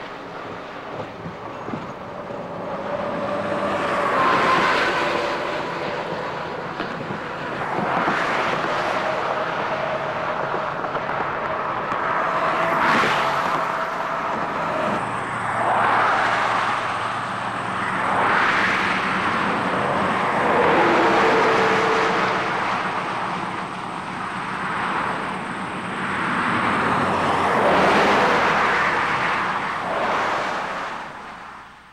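Highway traffic: vehicles passing one after another, each one swelling up and fading away, about every three to four seconds.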